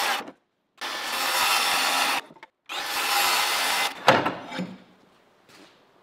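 DeWalt circular saw cutting half-inch plywood in three short runs, each about a second and a half, with brief gaps between them. A sharp knock about four seconds in ends the last cut, and the sound dies away.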